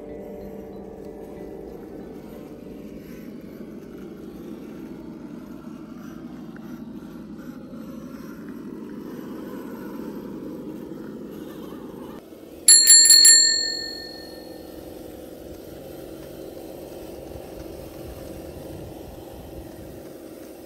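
A steady low hum, then about thirteen seconds in a bright bell rings several times in quick succession and fades over a second or so, like a bicycle-bell chime.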